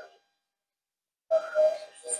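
Silence for about a second, then a short breathy sound from a woman exerting herself in a squat, with a faint whistle-like tone in it near the end.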